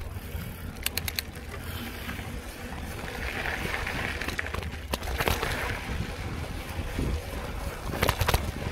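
Mountain bike riding along a dirt trail: a steady rumble of wind on the microphone and tyres on the dirt, with sharp rattles from the bike over bumps, a quick run of them about a second in, one near five seconds and more at the end.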